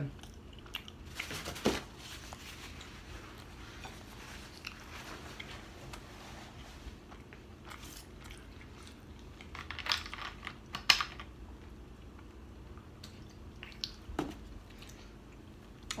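A person chewing a mouthful of food close to the microphone, with scattered wet mouth clicks; a few louder clicks come about a second in, around ten to eleven seconds, and once near fourteen seconds.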